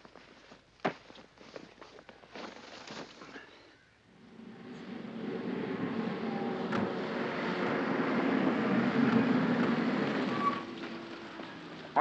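Motorcycles and cars driving past on a hill road: after a few quiet seconds the engine noise swells, peaks, then fades away.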